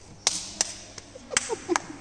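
About six sharp knocks, unevenly spaced, each with a short echo.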